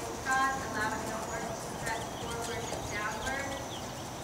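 Hoofbeats of a chestnut horse trotting on the dirt footing of an arena, with a voice talking in the background now and then.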